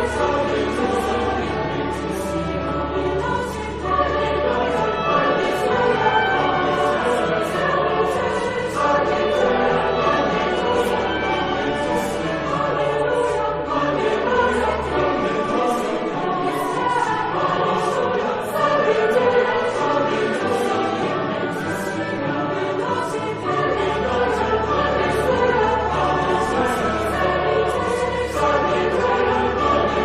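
Choir singing, with a low sustained note underneath that drops out for several seconds midway and then comes back.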